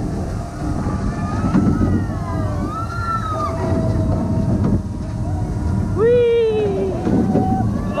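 Small powered kids' roller coaster train running along its track, a steady low rumble with wind on the microphone. Riders let out a few gliding whoops and cries over it, the loudest about six seconds in.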